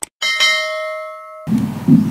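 A mouse-click sound effect, then a bright notification-bell ding from a YouTube subscribe animation, ringing for about a second before it cuts off abruptly. Background noise from the next scene cuts in near the end.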